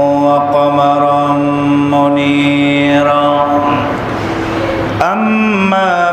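A man chanting the Arabic opening of a Friday sermon in a melodic recitation style. He holds one long, steady note for about three and a half seconds, there is a brief breathy lull, and the chant resumes with a rising phrase about five seconds in.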